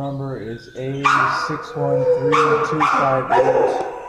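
A dog barking several times, with the barks starting about a second in and coming roughly a second apart.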